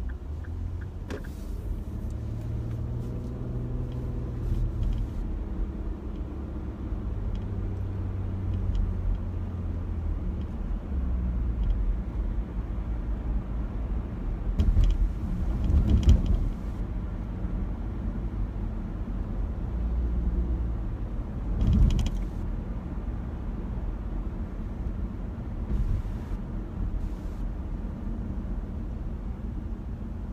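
Road and engine noise heard inside a moving car's cabin: a steady low rumble, with a few louder swells or bumps, the strongest around the middle and again a few seconds later.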